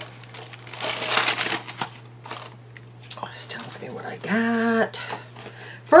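Packaging crinkling and rustling as a subscription box is opened and unwrapped, with a brief hummed vocal sound about four seconds in.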